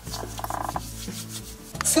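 Hands rubbing together: a quick run of soft rasping strokes in the first second, over a low steady hum. A woman starts speaking just before the end.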